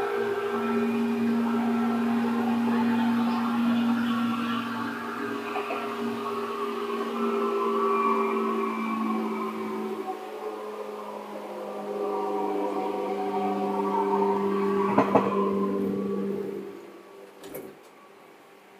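Seibu 2000 series electric train running: a steady hum made of several held tones, with a sharp knock about 15 seconds in, then the sound drops away to much quieter near the end.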